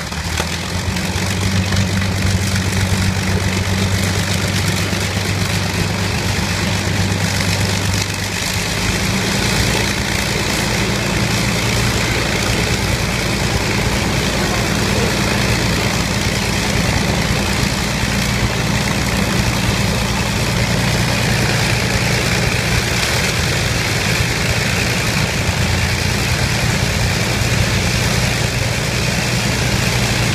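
Avro Lancaster's Rolls-Royce Merlin V12 piston engines running steadily just after start-up: a loud, even, low drone. Its note shifts about eight seconds in.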